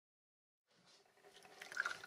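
Hot dark liquid poured from a small metal pot into a glass, fading in about two thirds of a second in and growing louder, with crackly splashing.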